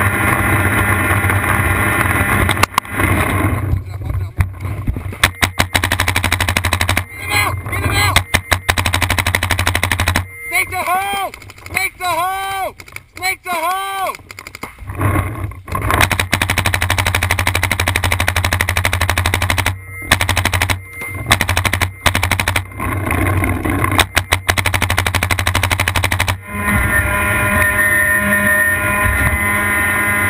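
Paintball markers firing in rapid strings of shots, with short pauses between the strings.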